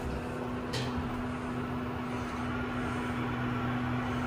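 Steady low hum inside a hydraulic elevator cab, with one light click just under a second in.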